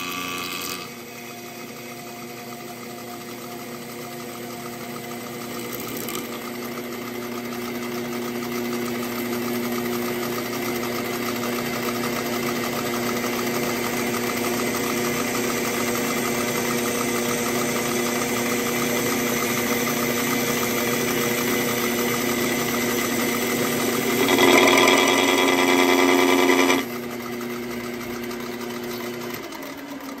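Lathe running steadily while a cutting tool faces off the ribs of a UHMW plastic track drive sprocket, the cut adding a noisy scrape over the motor's hum. The cut grows louder for about two seconds near the end. Then the lathe is switched off and begins to spin down with a falling pitch.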